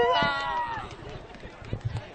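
A long shouted vocal cheer fades out in the first second. After it comes the general hubbub of a street crowd with scattered voices.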